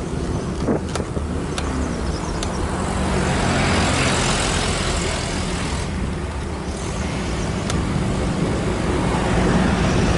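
Motor vehicles passing on a two-lane road, with tyre and engine noise swelling about three to four seconds in and again near the end, over a steady low rumble.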